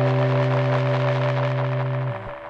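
Electric guitar note held and sustaining through a Montarbo disc echo unit, fed straight to the mixer without an amplifier. The note rings steadily under a hissy wash from the echo.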